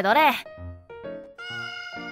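A cat meow sound effect, one long call starting about midway, over light background music.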